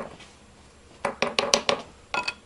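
A person laughing in a quick run of short bursts, starting about a second in.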